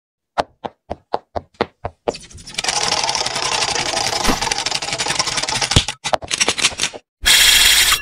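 Sound effects of an animated intro: seven sharp knocks at about four a second, then a long, rapid, dense clattering rattle that breaks up about six seconds in, then a short, loud burst of hiss near the end.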